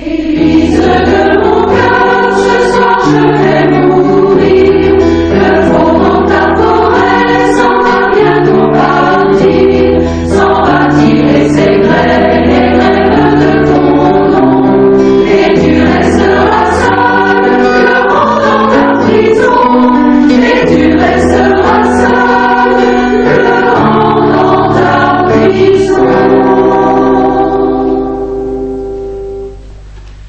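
Large mixed choir singing in chords, coming in loud at the start and easing off near the end.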